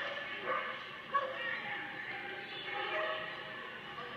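A small dog barking and yipping in several short calls while it runs an agility course, the sharpest call about a second in.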